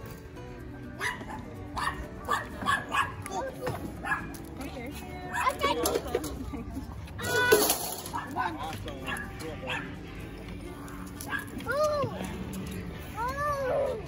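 Dogs barking, a string of short sharp barks with several more near the end.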